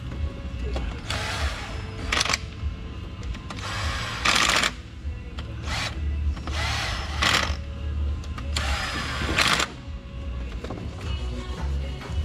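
A cordless power tool runs in about five short bursts, driving bolts into the front of a V8 engine block, over a steady music bed.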